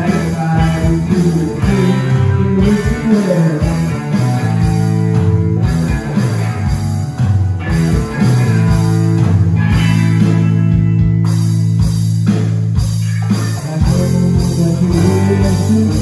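A rock band playing live in a room: electric guitars over a bass line and drums, an instrumental passage without singing.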